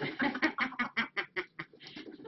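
A woman laughing hard, a quick run of even, repeated 'ha' pulses that tails off near the end.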